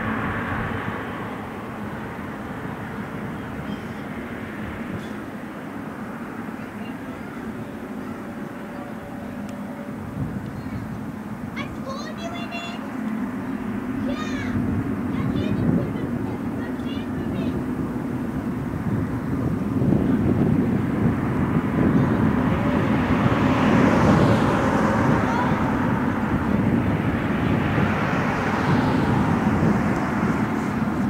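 Jet engines of a Boeing 777-300ER spooling up to takeoff thrust, as the airliner accelerates down the runway. The engine sound grows steadily louder from about a dozen seconds in and is loudest over the last ten seconds.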